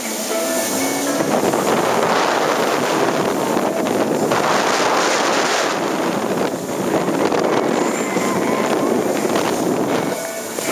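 Personal watercraft running at speed through shallow floodwater: a steady rush of engine, jet and spraying water, with wind buffeting the microphone.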